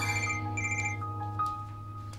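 Smartphone ringing with a trilling electronic ringtone: two short bursts in the first second, then a pause, over soft sustained background music.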